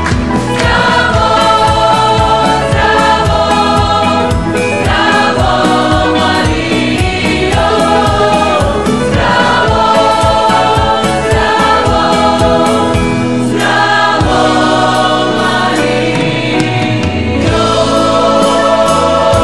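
A choir singing a religious song with instrumental accompaniment and a steady beat.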